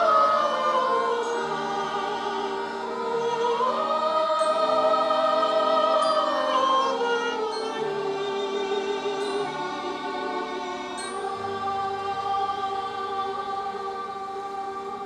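Children's choir and a soloist singing with an accordion ensemble: long held notes with vibrato over sustained accordion chords, the melody falling, rising and falling again. It grows gradually softer toward the end.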